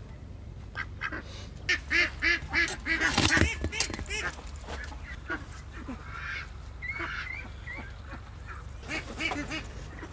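Domestic ducks quacking in a quick run of repeated calls, loudest between about two and four seconds in, then a few scattered quieter quacks.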